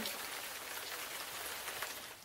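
A steady, even hiss of background noise with no distinct events, the same hiss that runs under the surrounding speech.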